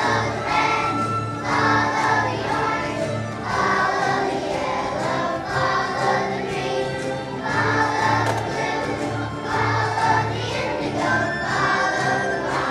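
A choir of first-grade children singing together over an instrumental accompaniment, its bass notes pulsing in a steady beat.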